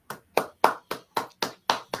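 One person clapping hands steadily, about four claps a second.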